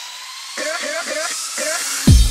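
House music breakdown: the kick and bass drop out while a hissing noise sweep rises, with short chopped vocal phrases from about half a second in.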